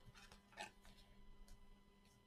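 Near silence: room tone with a steady faint hum, broken by a few faint, short scratchy rustles and ticks, a little cluster about half a second in and one more around a second and a half.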